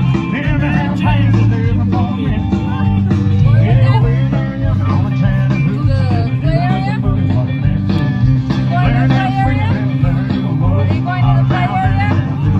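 Loud country-rock song from a live band: a singer over guitar, bass and a steady drum beat.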